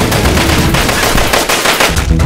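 Rapid machine-gun fire: a dense run of sharp shots in quick succession.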